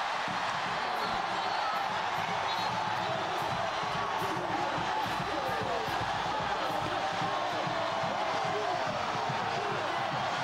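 Large stadium crowd cheering and shouting after a touchdown, a steady roar of many voices.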